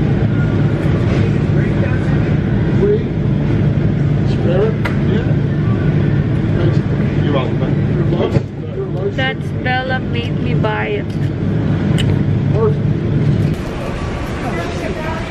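Steady low hum of supermarket refrigerated display cases, with indistinct voices over it. The hum cuts off shortly before the end.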